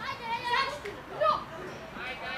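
Children's voices calling out to each other during a football game, in short high-pitched calls, the loudest a little over a second in.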